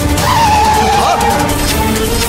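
Dramatic background music with sustained notes and a low pulse, over a car's tyres squealing for about a second as it skids to a stop.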